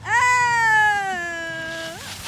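A woman's long drawn-out cry without words, held for nearly two seconds and slowly falling in pitch before it cuts off.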